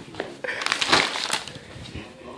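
Brown paper takeout bag crinkling and rustling as a dog moves with its head stuck inside it. The rustling is loudest between about half a second and a second and a half in.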